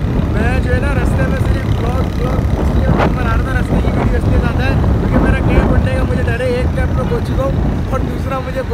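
Strong wind buffeting the microphone on a moving motorcycle, a heavy, steady rumble, with a man talking over it.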